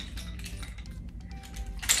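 Nunchucks swung through an upward wrist roll and caught: a run of small clicks and rattles, with a sharper clack near the end. Faint background music underneath.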